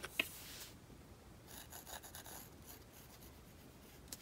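Fine paintbrush working on a painted earring blank: faint light rubbing strokes, with two small clicks right at the start.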